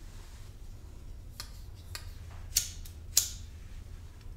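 A pocket lighter being struck several times: sharp scraping clicks of the flint wheel, the two loudest just past halfway and about three seconds in, the lighter catching to heat solder on the wire joints. A low steady hum runs underneath.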